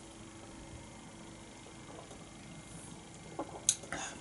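Quiet small-room tone with a faint steady hum, broken by a few short clicks near the end.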